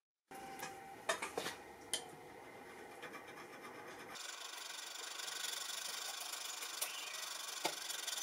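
A steel caliper scrapes across a knife blade with a few sharp clicks as the blade is marked. From about four seconds in, a hand file rasps continuously across the clamped iron blade.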